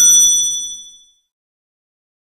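Edited bell-ding sound effect, its bright ring fading out about a second in.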